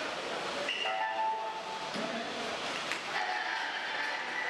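Many curtains being drawn along overhead metal lines at once, their rings scraping and squealing, with a cluster of short squeals about a second in.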